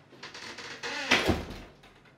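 A door being handled, with a few light knocks, then shut with a thud a little past a second in.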